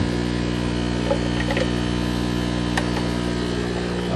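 Steady electric hum of an aquarium air pump driving sponge filters, one unchanging buzzy tone, with a few faint ticks in the middle.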